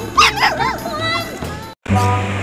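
A few short, high-pitched yelping cries that rise and fall in pitch, over background music, cut off by a brief moment of silence near the end.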